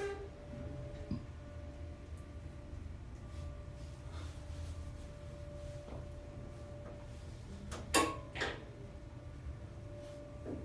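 Steady low hum of a Dover hydraulic elevator car and its machinery, heard from inside the car, with two sharp clicks close together about eight seconds in.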